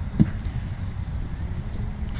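A thrown car tyre lands with a single dull thud just after the start, over a steady low rumble of wind on the microphone.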